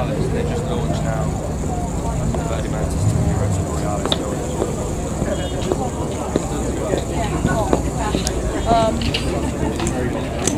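Background chatter of people talking nearby, with a low steady hum underneath.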